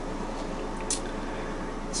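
Quiet room tone with a steady low hum, and a single short click about halfway through.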